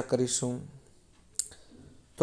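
A man's voice finishes a word, then a pause with a single short, sharp click about one and a half seconds in.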